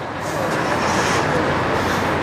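Street traffic: a car driving past on the road, its tyre and engine noise swelling in about half a second in and then holding steady.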